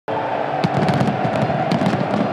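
A packed football stadium crowd making a steady roar while fireworks and firecrackers crack and pop repeatedly over it.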